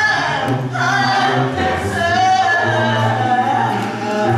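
Mixed choir of men and women singing a cappella gospel, voices only with no instruments, holding long notes over a sustained low bass part.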